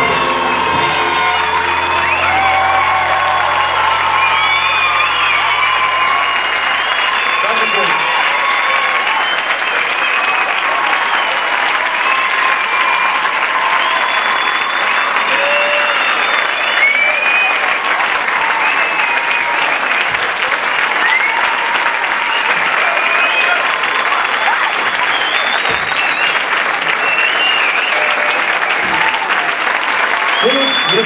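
A concert audience applauding and cheering at length. At the start a big band's last chord rings out and fades over the first several seconds.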